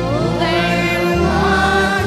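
Church hymn music: a singing voice, sliding up into a held note near the start, over sustained keyboard chords whose bass notes change every half second to a second.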